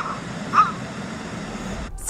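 Baby howler monkey crying out in distress while held by its captor, away from its mother. Two short, high cries, one right at the start and another about half a second in, over a steady background hiss.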